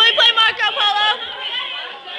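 Indistinct chatter of high young voices talking over one another.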